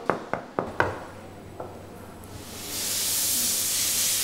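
Knuckles rapping four times in quick succession on a hard countertop, then a steady high hiss that rises in about two and a half seconds in and holds.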